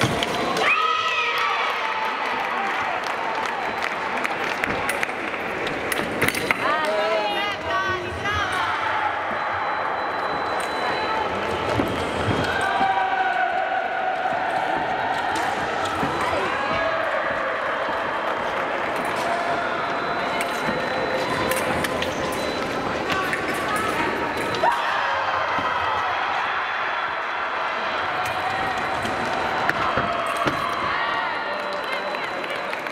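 Foil fencing bout: fencers' feet thudding on the piste with occasional knocks and blade clicks, under shouts and calls in a reverberant hall.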